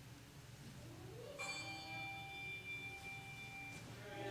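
A faint, sustained musical chord of several clear, steady tones starts suddenly about a second and a half in and holds for over two seconds: the opening of the music in a church service.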